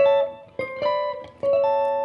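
Stratocaster-style electric guitar with single-coil pickups playing a short phrase of picked multi-note chords (triad voicings). There are three main attacks, at the start, about half a second in and about a second and a half in, each left to ring briefly and fade.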